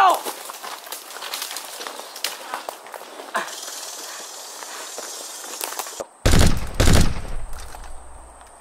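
Footsteps and brush crackling with scattered twig snaps as people hurry through dry undergrowth. About six seconds in come two loud, deep bursts of automatic gunfire.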